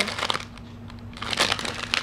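Packaging crinkling and rustling in hands as a small gift bag is opened and its contents unwrapped. It comes in two spells, a short one at the start and a denser, longer one from just past halfway.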